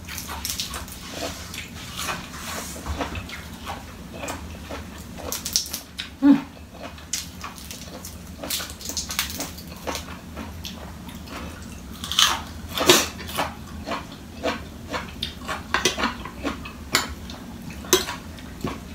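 Close-up eating sounds: a person chewing crisp fresh lettuce and spicy snail salad, with wet mouth sounds and irregular sharp clicks and crackles, the loudest a few seconds apart.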